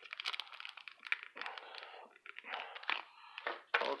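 Foil wrapper of a trading-card pack crinkling and crackling as hands work at tearing it open, a stubborn pack that will not easily rip.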